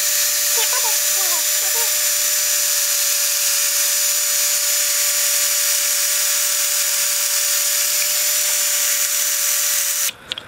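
Handheld power drill running steadily at one speed, its bit boring into the top of a metal scooter deck. It is slow going, and the pitch stays level throughout.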